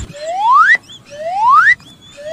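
Cartoon-style rising whistle sound effect, like a slide whistle sweeping up in pitch and cutting off sharply at the top, played twice about a second apart.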